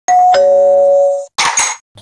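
Two-note electronic doorbell chime, a high 'ding' stepping down to a lower 'dong' that rings out and fades, followed by two short noisy bursts about a second and a half in.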